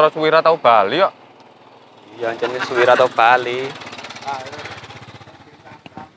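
A man's voice chanting "balik, balik" over and over in a sing-song way. Behind it, a small engine putters with an even rhythm, fading away toward the end.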